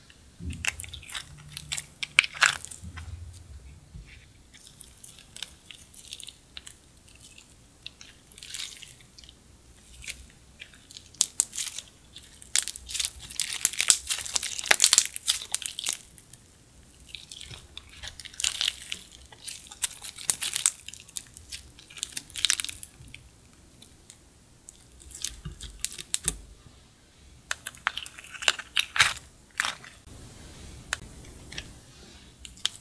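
Hands squishing and kneading clear slime, making irregular sticky crackles and clicks, with a denser run about halfway through.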